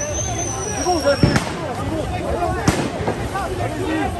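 A thin high whistle that ends in a sharp bang, then a second bang about a second and a half later, over a crowd's chatter.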